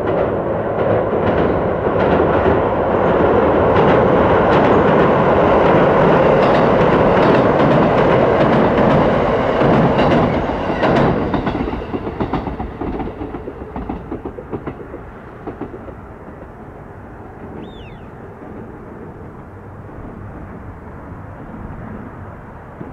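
JR Kyushu 787 series electric express train crossing a steel girder bridge: a loud, steady rumble of wheels on the steel span, with many sharp wheel clicks over the rail joints. It fades away from about 11 seconds in.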